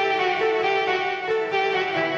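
Electric guitar played through an Electro-Harmonix Mel9 tape replay pedal and Line 6 HX Stomp, giving a smooth, bowed, violin-like tone. A melodic line of sustained, overlapping notes changes pitch two or three times a second.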